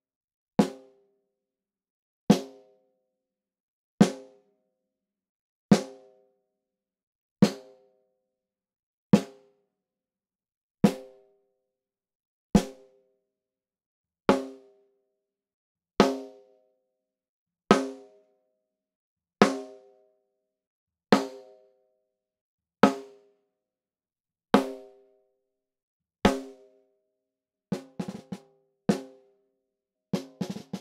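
Snare drum with an Evans head struck with a stick, one single stroke about every 1.7 seconds, each with a brief pitched ring. Each stroke is heard through a different snare microphone. The strokes go from plain hits to rim shots, and near the end a quicker run of several strokes begins a short drum pattern.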